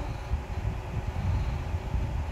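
A pause between words, filled only by a low, steady background rumble with a faint hiss above it.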